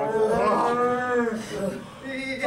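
A single voice giving one long drawn-out shout lasting about a second and a half, rising and then falling in pitch, during a close-quarters pro-wrestling grapple.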